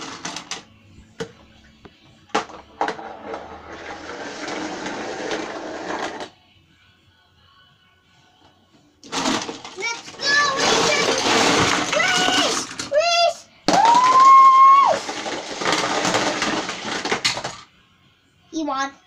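Small die-cast toy cars clicking onto a plastic race-ramp tower, then rattling down its spiral plastic track for about three seconds. After a pause comes a louder stretch of noise with rising, wavering and held tones that stops shortly before the end.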